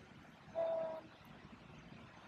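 A vehicle horn toots once from traffic nearby: one short, steady note of about half a second, about half a second in.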